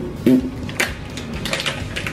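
A small plastic wrapper being picked and pulled at by the fingers, giving a few sharp crackles, with a short strained grunt near the start.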